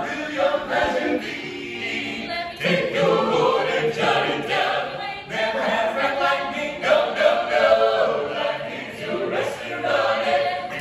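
Mixed male and female a cappella vocal ensemble singing in close harmony, with no instruments, under a rotunda dome.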